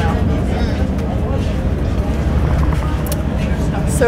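Steady low rumble of the MV Ilala ferry's engine as the ship gets under way from the dock, with faint voices of people around it.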